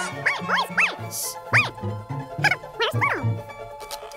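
A cartoon dog barking and yelping in about six short cries that each rise and fall in pitch, over background music with a pulsing low beat.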